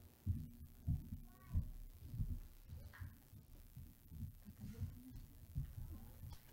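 Footsteps on a stage platform: a run of low, muffled thuds roughly every half second.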